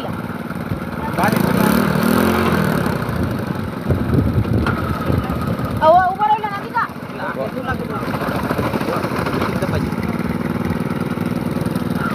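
Small air-cooled engine on a homemade water-propulsion rig running steadily, driving a propeller that churns the water.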